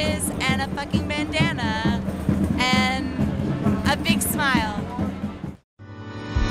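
A voice over background music with a steady low bed. Near the end the sound cuts out abruptly for a moment as new music begins.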